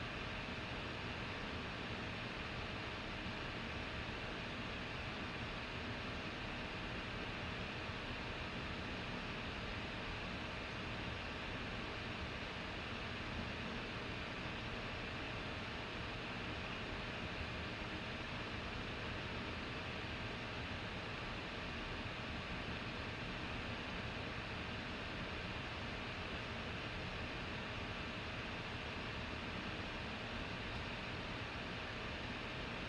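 Steady, even hiss of background noise with a faint hum under it, without any distinct sound events.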